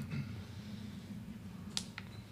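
Quiet room tone in a press-conference room with a faint steady low hum, broken by one short sharp click near the end.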